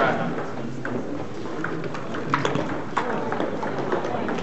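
Table tennis hall sound: scattered, irregular sharp clicks of ping-pong balls striking bats and tables, over a murmur of background voices.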